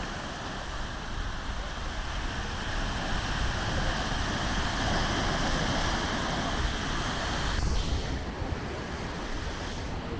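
Ocean surf breaking and washing over rocks along a rocky shore: a steady rush that swells through the middle and eases off near the end, over a low rumble of wind on the microphone.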